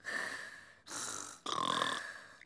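A cartoon piglet snoring in its sleep: a few slow, breathy in-and-out snores in a row.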